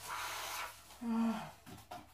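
A person breathing out hard into a bag held over the nose and mouth, a breathy rush of air, then a short hummed voice sound about a second in and a couple of light clicks near the end.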